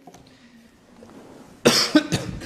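A man coughs once, loudly, near the end, close to the microphone.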